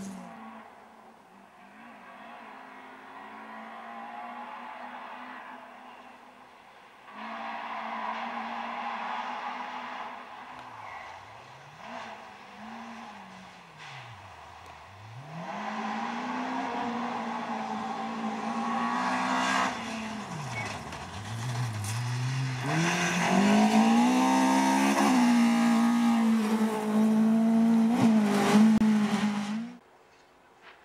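Rally car engine revving hard through the gears on a gravel stage. The revs climb and fall back again and again with gear changes and lifts off the throttle, and the car grows louder as it comes closer. It is loudest near the end, then stops abruptly.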